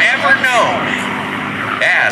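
P-51 Mustang's V-12 Merlin engine droning steadily overhead during an aerobatic display. A man's voice on a public-address system talks over it in the first second and again near the end.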